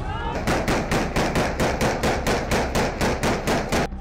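A rapid, evenly spaced series of sharp bangs, about four or five a second, that stops shortly before the end.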